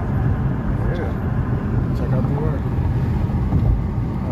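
Steady low rumble of a car's road and engine noise heard from inside the cabin while driving, with faint voices underneath.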